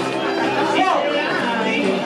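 Chatter of several voices talking over one another in a large hall, with music playing underneath.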